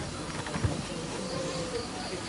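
High-pitched insect chirping in an even pulsing rhythm, about four pulses a second, coming in over halfway through. Two low thumps in the first second.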